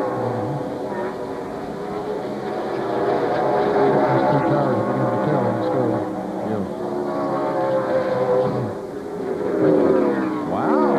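V8 engines of NASCAR Winston Cup stock cars racing on a road course, several engine notes overlapping, their pitch rising and falling as the cars accelerate, shift and brake through the corners.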